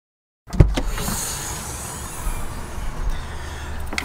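Sounds inside a car: a knock about half a second in, then a steady low rumble with a high hiss.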